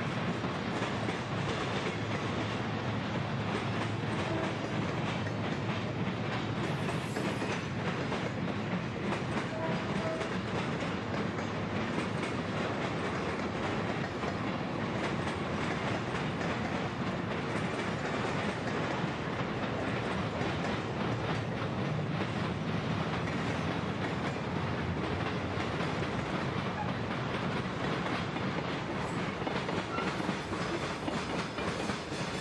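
Freight cars rolling past: a steady run of steel wheels on rail with a clickety-clack of wheels over the rail joints, going on without a break.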